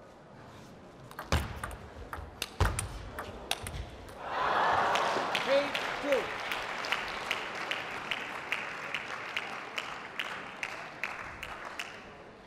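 A table tennis rally: the ball clicks sharply off bats and table in quick strikes, with two heavier knocks, for about three seconds. About four seconds in, the point ends and the crowd breaks into applause with a couple of short shouts, and regular sharp claps ring on through it as it slowly dies down.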